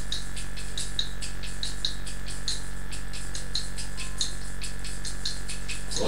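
Hand percussion keeping a steady beat of about four sharp strokes a second during a break in the choir's singing, over a steady low hum.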